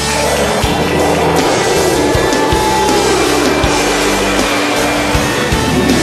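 Music playing over a loud, steady rushing roar of aircraft flying overhead.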